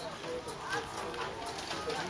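Pushchair wheels rattling and clicking over brick paving as it is pushed along, with voices talking in the background.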